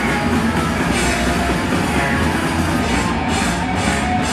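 Hardcore punk band playing live and loud: distorted guitars, bass and fast drums in one dense, unbroken wall of sound.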